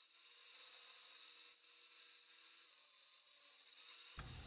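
Faint sound of a handsaw cutting through a maple plank, a steady rasp of the teeth in the wood.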